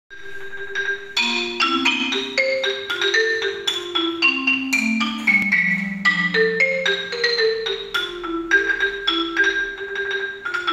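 Concert marimba played solo with mallets: a flowing melody of struck, ringing wooden-bar notes, several a second, over lower notes, with one low note held for a couple of seconds around the middle.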